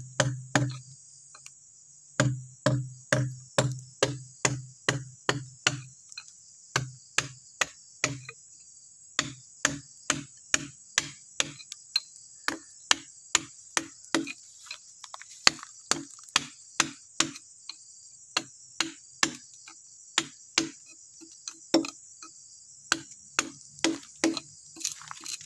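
Carving chisel struck by repeated hammer blows, cutting into Bornean ironwood (ulin): sharp knocks about three a second, in runs broken by short pauses. A steady high insect buzz runs underneath.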